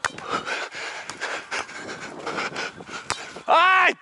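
A beach volleyball player's hard panting breaths during a rally, opened by a sharp smack as the ball is played right at the start. Near the end the player lets out a loud, frustrated "ай!".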